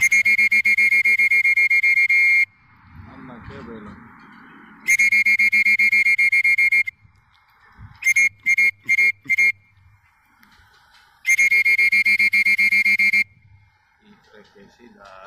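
A loud electronic buzzer or alarm sounds a steady high, rapidly pulsing tone in bursts of about two seconds. There are three long bursts, and about eight seconds in a run of four short beeps.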